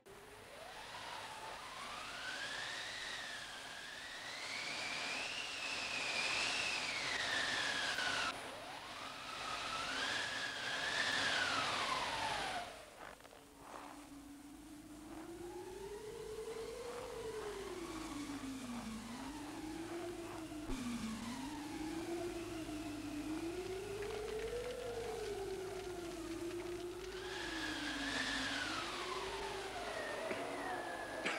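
Wind howling: a whistling tone that slowly rises and falls over a hiss. About halfway through it drops out briefly and gives way to a lower, wavering moan.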